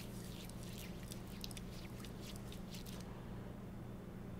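Palms rubbing together, coated in thick beard butter: a faint, wet, squishy sliding in quick strokes that stops about three seconds in.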